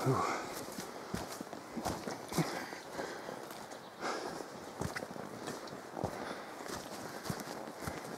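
Footsteps of a hiker walking along a dirt and leaf-litter forest track, the steps coming irregularly, a little under a second apart.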